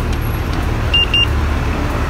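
A Mobike rental bike's solar-powered smart lock gives two short high beeps about a second in, the signal that the rear wheel is locked and the ride has ended. Steady low traffic rumble runs underneath.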